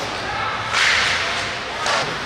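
Ice hockey skate blades scraping the ice in a hiss lasting about half a second, then a sharp crack near the end.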